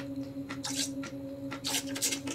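Liquid hydroponic nutrient poured from a bottle into a small measuring spoon and tipped into a bucket of water: two brief trickling splashes about a second apart, over a steady low hum.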